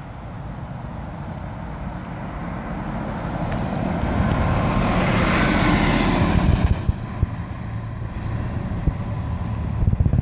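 A VDL tandem-axle coach approaching, passing close by and pulling away on a snowy road, with engine and tyre noise. The sound builds steadily, is loudest about five to six seconds in, then drops off suddenly and carries on more quietly as the coach moves away.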